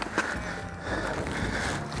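Steady wind and water noise on an open boat, with faint background music under it and a single light click shortly after the start.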